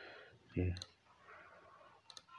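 A single sharp computer mouse click a little under a second in, against faint room hiss.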